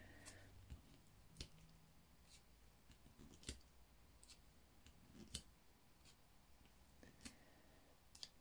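Near silence broken by faint small clicks and taps, roughly one a second, from mini foam adhesive dimensionals being peeled from their backing sheet and pressed onto a paper die-cut piece.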